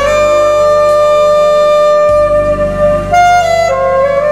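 Alto saxophone playing a slow melody: one long held note for about three seconds, then a brief higher note and a step back down near the end, over a backing track with bass.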